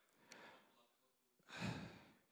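Near silence broken by a man's breath into the microphone: a faint breath early on, then a louder sigh-like exhale about a second and a half in, as he pauses to think over his answer.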